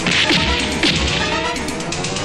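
Film fight sound effects: two sharp whacking blows, about a quarter second and about a second in, over a loud background score that cuts in suddenly just before.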